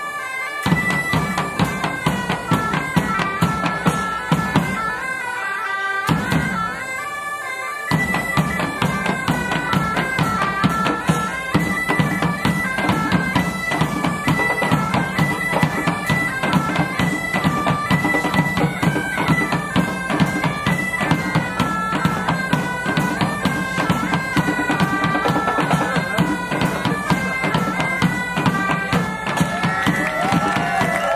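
Bagpipe music with drums: a melody stepping over a steady drone, with an even drum beat. The drone and beat drop back briefly near the start and again just before eight seconds in, then carry on fully.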